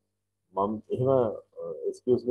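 A person's voice speaking, starting about half a second in after a brief silence.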